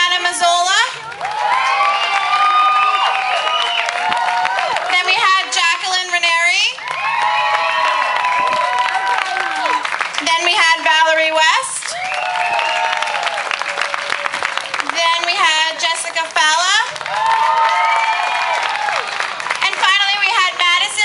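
Audience applauding, with high-pitched cheering voices: wobbling whoops and held calls sounding over the clapping every few seconds.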